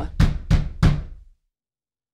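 Four knocks on a door in quick succession, each a sharp rap with a low thud, over about a second.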